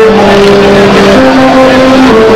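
Background music: a melody of long held notes stepping from one pitch to the next, played at a steady, loud level.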